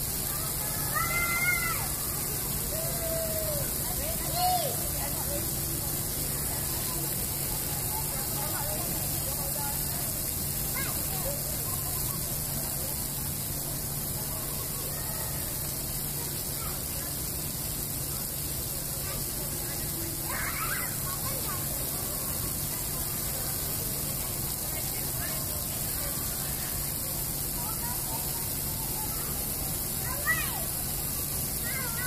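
Splash-pad water jets spraying steadily, a continuous hiss of water, with a few brief high-pitched voice sounds near the start and again about two-thirds of the way through.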